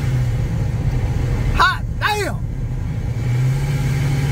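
Supercharged 5.7 Hemi V8 pickup heard from inside the cab, running with a steady low drone off boost just after a full-throttle pull, the drone rising slightly near the end. Two short vocal exclamations come about a second and a half in.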